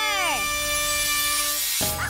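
Cartoon magic sound effect: a falling swoop that turns into a bright, hissing shimmer over held musical notes, cutting off shortly before the end.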